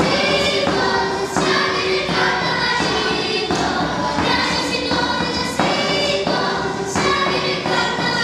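Children's choir singing an Argentine folk song, with sustained notes that change every half-second or so, over a hand drum keeping the beat.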